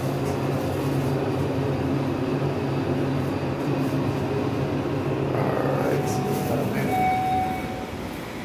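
Hydraulic elevator's pump motor running with a steady hum as the car travels up. Near the end a short, steady electronic tone sounds for about a second as the car arrives.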